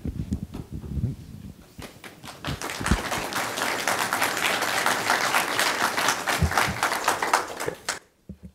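Audience applauding, swelling up about two seconds in and stopping just before the end. A few dull thumps come in the first couple of seconds and under the clapping.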